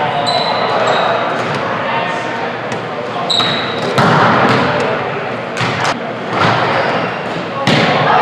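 A volleyball rally in a large, echoing gym. There are sharp smacks of hands on the ball, the loudest about four seconds in as a player attacks at the net, with two more near six and eight seconds. Brief high sneaker squeaks sound on the hardwood floor, over background voices.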